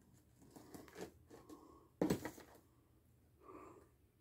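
Quiet handling of a cardboard shipping box packed with paper: faint scattered rustles and one louder knock about two seconds in.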